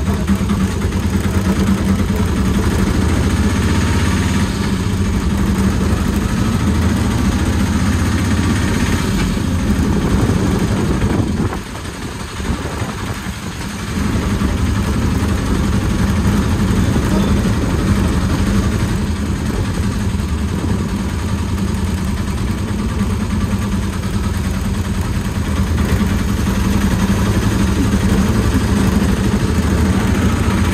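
Tuk-tuk (auto-rickshaw) engine running steadily as it drives, heard from inside the passenger cab. The engine eases off for a couple of seconds about twelve seconds in, then picks up again.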